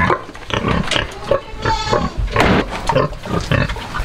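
A heavily pregnant, curly-coated gilt grunting in a series of short grunts while being stroked.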